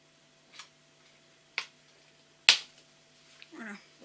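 Three sharp clicks about a second apart as scissors cut through plastic packaging, the last one the loudest, with a knock to it.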